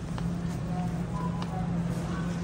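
Indoor store ambience: a steady low electrical hum with faint background music and a few short, faint tones.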